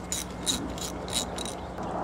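Ratchet wrench with a 7/16 socket clicking in short, uneven runs as the engine cover bolts are backed out.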